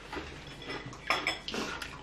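Metal cutlery clinking and scraping against plates during a meal, with a few sharp clinks in the second half.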